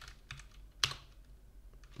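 Computer keyboard keystrokes: a few light key presses, with one sharper keystroke a little under a second in, as a terminal command is re-entered and run.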